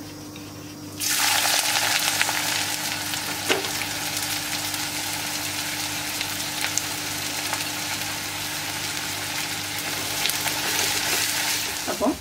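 Sliced onions frying in hot oil in an iron kadai: a loud sizzle starts suddenly about a second in as they go into the oil, then holds steady with scattered small crackles.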